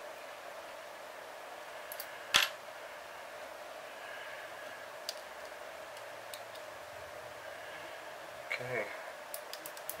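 Small metal parts clicking as a lubricated wrist pin is slid through a model engine's piston and connecting rod: one sharp click a little over two seconds in, then a few faint ticks, over steady low room hiss. The pin goes in with a smooth fit.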